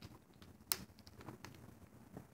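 Faint handling noise: a scatter of small clicks and taps, with one sharper click a bit over a third of the way in.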